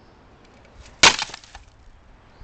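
A cracked terracotta flower pot smashing on stone slabs about a second in: one sharp crash followed by a brief clatter of shards.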